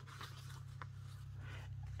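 An old, fragile paper letter being handled and folded into its own envelope: soft rustling with a few light crinkles, over a steady low hum.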